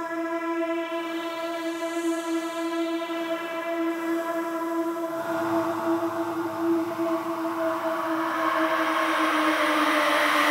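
Instrumental dark-folk music: a single held droning tone with overtones, steady in pitch. About halfway through, a rising wash of noise joins it and swells, and the whole grows gradually louder.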